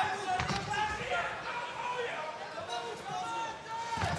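Dull thuds of kickboxing punches and knees landing, about half a second and a second in, under indistinct voices shouting in the arena.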